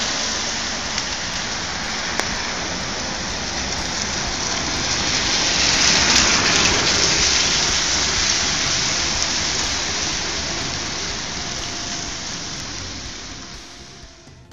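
Car tyres hissing on wet asphalt, a continuous spray noise that swells as a car passes close a little past the middle and fades away toward the end.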